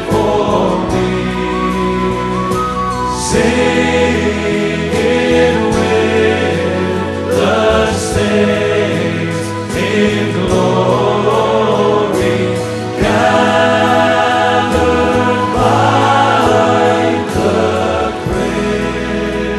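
A hymn sung by a group of voices over steady instrumental accompaniment.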